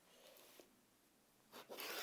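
Rotary cutter rolling along a ruler and slicing through the quilt's layers: a faint scratchy cutting sound that starts about one and a half seconds in, after near silence.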